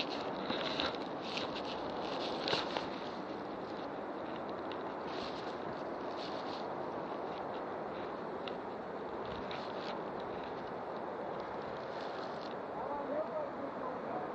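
Walking through dense forest undergrowth: rustling leaves and crunching leaf litter underfoot, with brief crackly bursts in the first few seconds and again about halfway, over a steady hiss of background noise.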